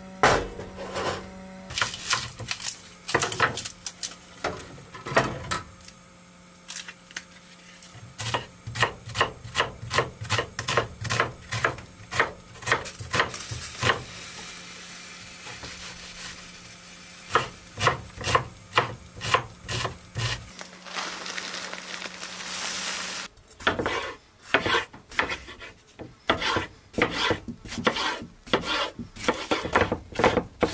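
Kitchen knife cutting vegetables on a wooden cutting board: runs of quick strokes, with a few short pauses. A low steady hum sits underneath and stops suddenly about two-thirds of the way through.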